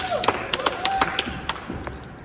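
A quick, irregular run of sharp clicks, several a second, with a brief held hum-like voice sound at the start and again about a second in.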